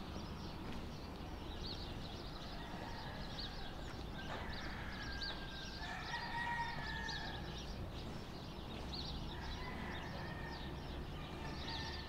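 Birds calling outdoors: short high chirps repeat every second or so, and two longer drawn-out calls come in about four seconds in and again near the end, over a low steady rumble.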